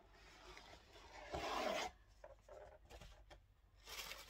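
A rigid cardboard gift box's lid rubbing as it slides off its base, one brief rub about a second and a half in, with faint paper and cardboard rustles around it.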